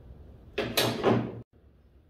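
A steel window-regulator arm scraping and rattling against a truck door's sheet-metal panel, one harsh scrape of about a second that stops abruptly.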